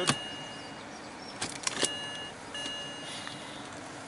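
BMW Steptronic automatic gear selector clicking as it is knocked over into sport mode: one sharp click at the start and a few more clicks about a second and a half in. A thin high electronic tone sounds at the start and again in two spells near the middle.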